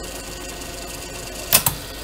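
Pioneer CT 300 cassette deck transport running steadily on its new motor and freshly fitted belts, a low even whir. About a second and a half in come two sharp mechanical clicks in quick succession.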